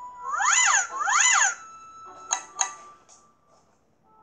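Two cartoon-style sound effects from the storybook app, each a pitched note about half a second long that slides up and back down. They are followed by two quick clicks about a third of a second apart, over a faint steady background tone.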